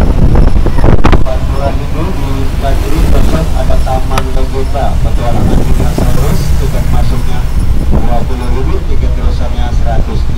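Open-sided tour bus driving along: a loud, steady, low rumble of engine and road noise, with indistinct voices over it.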